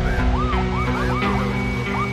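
A siren sound effect over the opening theme music: a quick yelping wail rising and falling about four times a second, over steady low sustained chords.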